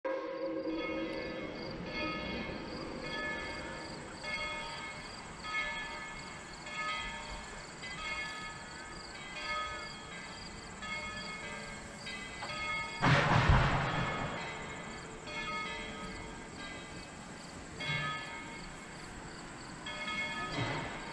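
A steam locomotive's bell, Tweetsie Railroad No. 190's, ringing in a steady rhythm of about one stroke every 1.2 seconds as the train gets under way out of sight. About thirteen seconds in comes a louder rush of noise lasting a second or so.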